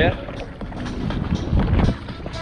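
Kayak paddle strokes dipping and splashing in choppy sea water, with wind rumbling on the microphone, heaviest near the end.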